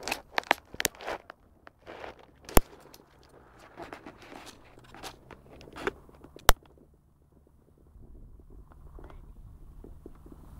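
Close rustling and crunching on a phone's microphone as it is handled near the grass, with two sharp knocks, one about two and a half seconds in and one about six and a half. It goes quieter after about seven seconds, and a low, even rumble comes in near the end.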